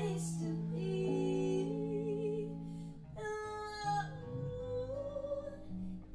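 Live acoustic-style band music: women singing over electric and acoustic guitars, with a held, wavering sung note partway through before the next phrase comes in.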